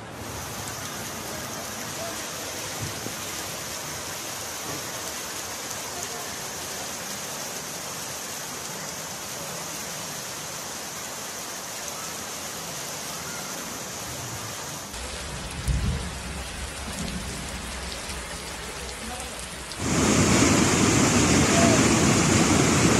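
Heavy rain falling steadily, with a brief low rumble about two-thirds of the way in. About two seconds before the end, a much louder rush of floodwater cuts in.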